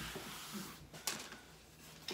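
A plastic box fan being handled and moved: rustling and scraping, with a sharp knock about a second in as the housing bumps something.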